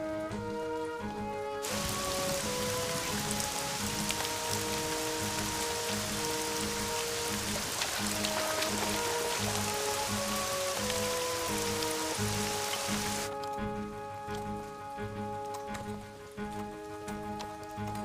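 Heavy rain pouring down steadily, cutting in about two seconds in and cutting off abruptly about thirteen seconds in. Background music with a steady pulsing beat and held notes plays throughout.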